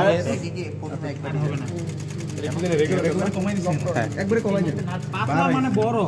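Juki DDL-5550N industrial single-needle lockstitch sewing machine stitching, a fast even clatter that starts about half a second in and runs until near the end, with voices over it.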